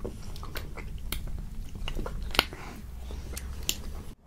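Close-miked chewing of chocolate-and-almond-coated ice cream bars, with several sharp crunches scattered through, the loudest about two and a half seconds in.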